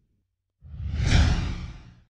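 A whoosh sound effect for a logo animation: after a short silence, a rush of noise rises about half a second in, peaks near the middle and fades out by the end.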